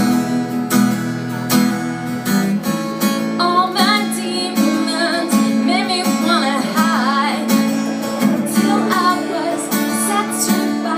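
A woman singing live over her own strummed acoustic guitar. The strumming runs steadily, and the voice comes in about three and a half seconds in.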